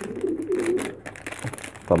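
Pigeon cooing, a low wavering call, with light crinkling of a syringe's plastic wrapper being handled.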